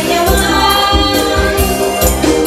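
A woman singing into a microphone over amplified band music with a steady beat and tambourine.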